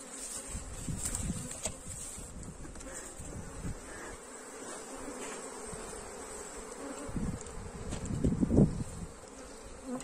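Honeybees buzzing steadily over an open hive, with low thumps and rumbles of the hive being handled, louder near the end.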